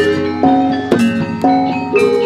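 Javanese gamelan playing: bronze metallophones and kettle gongs struck in a steady pattern, a new ringing note about every half second.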